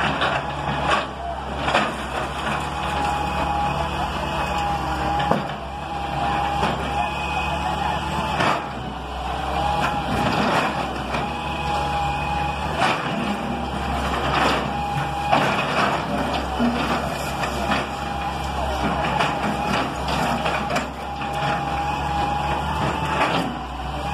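Hitachi EX200 hydraulic excavator's diesel engine running steadily while the machine breaks down brick and concrete walls, with scattered knocks and crashes of falling rubble and a thin whine that comes and goes.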